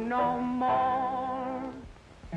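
Early-1930s cartoon soundtrack music: a held chord that fades out near the end.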